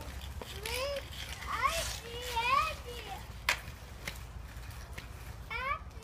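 A young child's high-pitched voice calling out in several drawn-out, wavering cries, with one sharp knock about three and a half seconds in.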